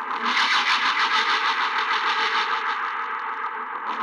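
A rough, fluttering noise with the bass cut away: a distorted sound texture in place of the beat, with no clear notes.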